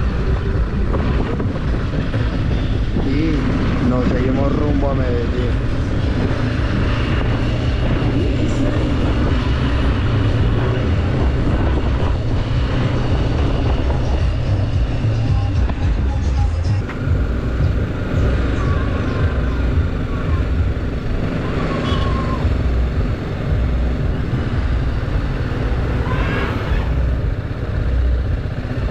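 Motorcycle running at low speed through town streets, a steady engine and road rumble with wind on the microphone.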